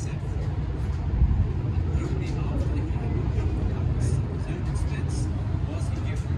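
Wind blowing across a phone's microphone, heard as an uneven low rumble.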